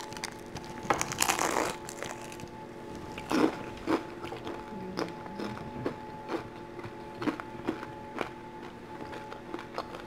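Close-up crunching and chewing of a crispy deep-fried shrimp dumpling: a loud crunchy bite about a second in, then chewing with scattered small mouth clicks and smacks.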